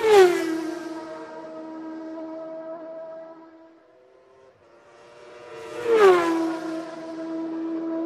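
A sound effect played twice: a swelling whoosh carrying a humming tone that drops in pitch at its peak, then holds a steady note for a few seconds. It fades out about halfway through and repeats the same way about six seconds in.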